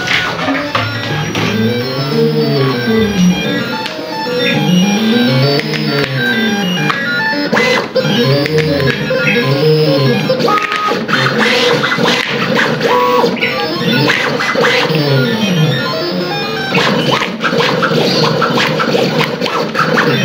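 Jinka 271 Pro vinyl cutting plotter cutting out lettering: its stepper motors whine in repeated rising-and-falling sweeps as the knife carriage speeds up and slows down along the letter shapes, with short ticks and clicks between moves.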